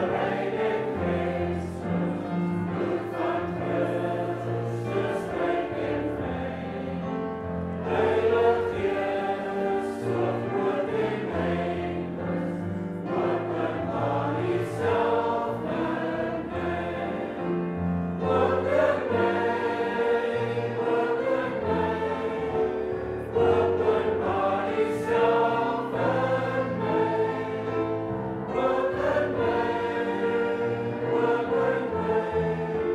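A church congregation singing an Afrikaans hymn together, with notes held and changing phrase by phrase.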